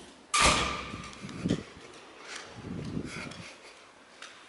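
A heavy door shutting with a sudden thud and a short metallic ring that fades over about a second, followed by a few softer knocks.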